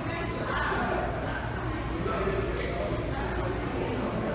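Indistinct talking of several people in an indoor public hall, a steady background murmur with no clear words.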